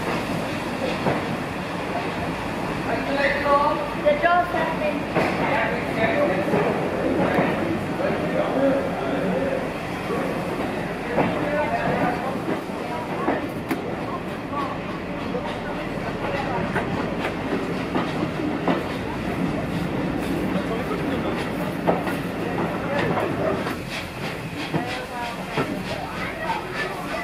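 Steam-hauled railway coach running along the track, with a steady rumble and irregular clicking of the wheels over the rail joints, heard from inside the coach.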